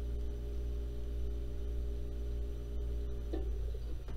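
A low, steady hum made of several held tones, with a brief faint voice near the end.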